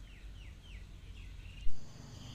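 A bird calling in the background: a quick series of short chirps, each sliding down in pitch, about three a second. A sudden loud knock near the end.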